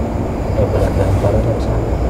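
Men talking over a steady low rumble.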